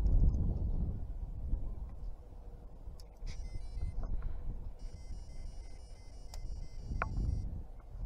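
Electronic carp bite alarm on a rod pod sounding as the rod is set and the line tightened after a cast: a short tone about three seconds in, then a longer steady tone lasting about two and a half seconds. Low rumble from handling and wind on the microphone throughout, with a knock near the end.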